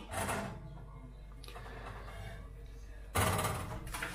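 A metal plate sliding and clattering against an oven's wire rack, in one short burst about three seconds in, over a low steady hum.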